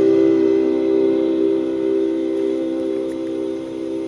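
The song's closing guitar chord ringing out, a few sustained notes slowly fading with no singing over them.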